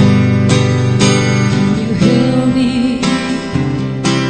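Acoustic guitar strumming the chords of a slow ballad, the chord changing about every second.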